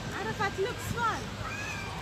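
White domestic geese calling: a quick series of short, pitched calls, each rising and then falling, with a longer call near the end.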